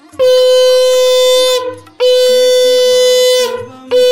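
A conch shell (shankha) blown in long, steady, loud blasts at one pitch: two held for about a second and a half each, and a third starting near the end.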